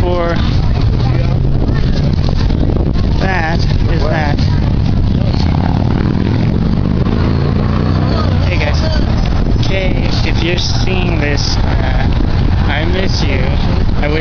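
Loud street noise: a steady low traffic rumble, with a vehicle speeding up past about six to eight seconds in, and scattered voices of people nearby.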